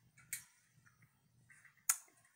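Quiet room tone with a faint low hum, broken by a small tick about a third of a second in and a sharp, louder click near the end.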